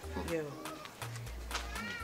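Short gliding, meow-like cries over quiet background music with a low, stepping bass line.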